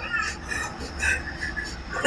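Faint, brief snatches of stifled laughter over a low steady hum.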